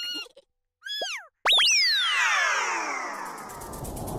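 Cartoon sound effects: a short squeaky character voice, then a quick blip that rises and falls in pitch. About one and a half seconds in comes a loud effect whose several tones slide down in pitch over about two seconds, and a rushing noise builds near the end.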